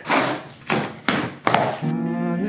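Cardboard box being opened: a scissor blade slitting the packing tape and the flaps being pulled apart, heard as four short scraping strokes. Guitar music comes in near the end.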